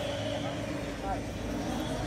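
Faint background voices over a steady low hum and rumble, with no distinct event.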